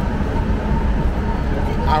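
Steady low rumbling background noise of a busy railway station concourse heard from a moving walkway, with a man's voice starting just at the end.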